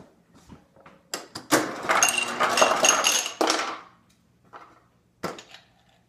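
Refrigerator door ice dispenser running, with ice cubes clattering into a cup for about two and a half seconds, starting about a second and a half in. A single sharp click follows near the end.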